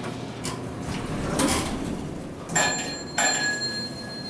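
Elevator doors sliding open, followed by an arrival chime struck twice, each strike leaving a bright bell tone ringing on.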